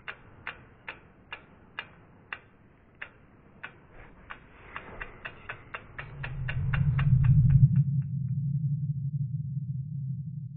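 Logo-reveal sound effects: a run of sharp ticks, about two a second at first and speeding up to about five a second before stopping some eight seconds in. Under them a low hum swells from about five seconds in and settles into a steady low drone.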